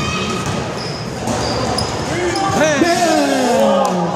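Basketball game on a hardwood gym floor: the ball dribbling and sneakers squeaking as players run the court. Voices call out near the end, echoing in the large hall.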